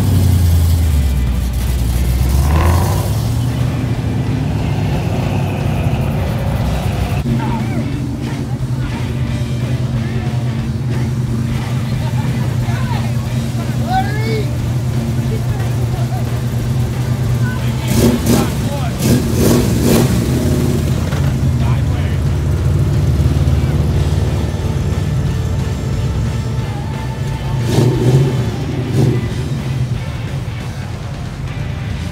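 Classic American muscle car engines rumbling at idle and revving as the cars pull out one after another, with louder bursts of revving about two-thirds of the way through and again near the end, over crowd voices.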